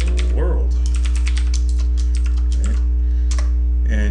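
Rapid keystrokes on a computer keyboard, a fast run of clicks as a line of code is typed, over a steady low hum.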